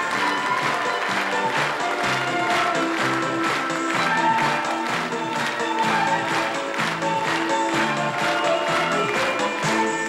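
Upbeat stage music, a tune of held notes over a quick steady beat, played as the performance ends.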